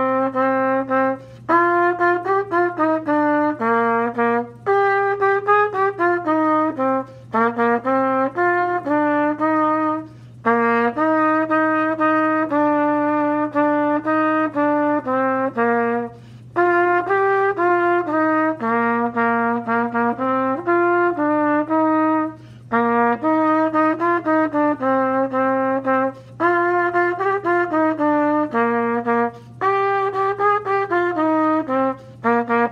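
Trumpet playing a slow warm-up melody in three-four time, pitched an octave lower, as phrases of sustained connected notes broken by short breaths every few seconds. A faint steady low hum runs underneath.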